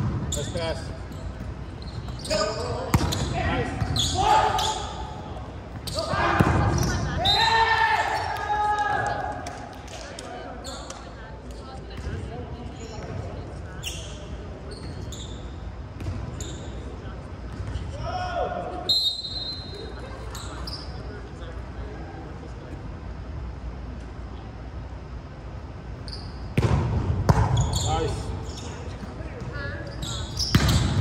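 Indoor volleyball play in a large gymnasium: sharp slaps of the ball being struck and hitting the floor, with players shouting calls, all echoing in the hall. Busy at the start and again near the end, with a quieter stretch in the middle.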